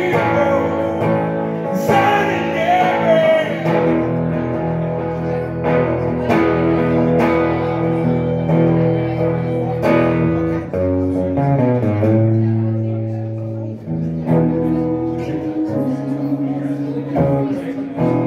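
Hollow-body electric guitar strummed through an amplifier in an instrumental passage, ringing chords that change every second or two.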